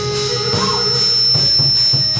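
Chầu văn ritual music: a plucked lute playing a melodic line over rhythmic percussion, with a steady high-pitched tone running through it.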